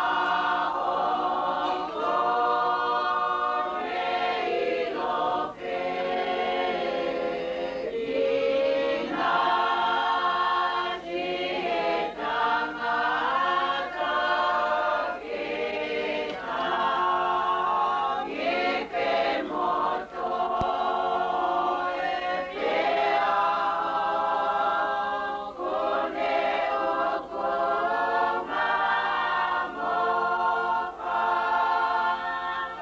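A choir of many voices singing a hymn unaccompanied, in long sustained phrases with brief pauses between them.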